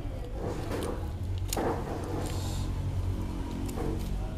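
Metal spoon stirring very thick rice porridge on a plate, with a few sharper scrapes or clinks against the plate, the loudest about one and a half seconds in. Background music and a low steady hum run underneath.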